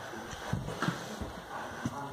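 Basset hound puppy climbing carpeted stairs, its paws and body landing on the treads in a few irregular thumps.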